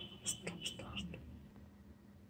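A few faint, short clicks and a soft rustle from a beaded headband being handled and turned in the hands.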